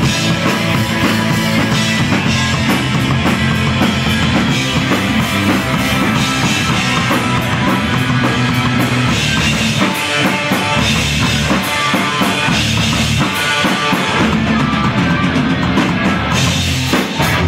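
Melodic hardcore punk band playing live: electric guitars, bass and a drum kit going loud and without a break through an instrumental passage with no singing. The low end drops out briefly about ten seconds in.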